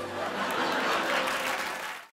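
Studio audience applauding, an even clatter of many hands that cuts off suddenly right at the end.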